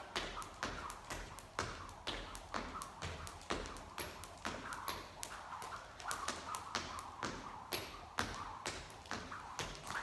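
Skipping rope hitting the floor at a steady rhythm, about two sharp taps a second, with the skipper's feet landing between scissor-kick jumps.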